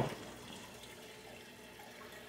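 Faint, steady running water in a reef aquarium's sump, the water from the display tank trickling through the filtration beneath the tank.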